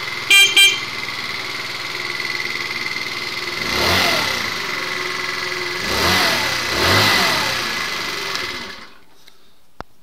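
Two short horn beeps, then a 2012 GMW Jet Classic scooter's 49cc four-stroke engine, bored out with a 50 mm big-bore kit, idles and is revved three times with the throttle. It shuts off near the end, followed by a small click.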